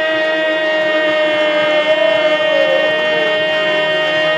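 Harmonium sustaining a steady chord under a man singing a long held kirtan note, his voice sliding down in pitch about halfway through.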